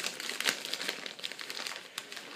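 Crinkling and rustling of a disposable aluminium foil pan being handled while shredded cheese is spread over the dip, a dense run of small crackles.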